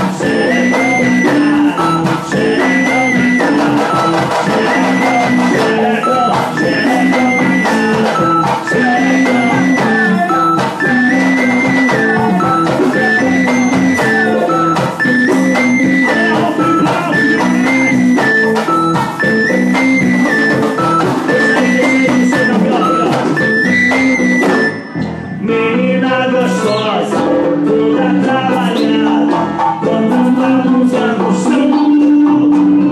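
Live band music: a keyboard riff repeating about every two seconds over guitar and a steady beat, with a short break about 25 seconds in.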